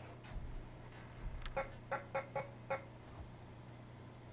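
A quick run of about six short clicks, starting about a second and a half in and lasting just over a second, over a faint steady hum.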